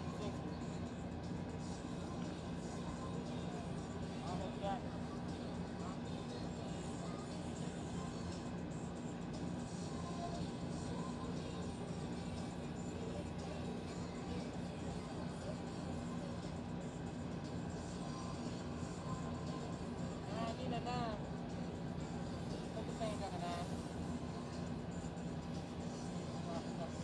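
Casino floor ambience: a steady din of crowd chatter and background music, with a few faint voices standing out now and then.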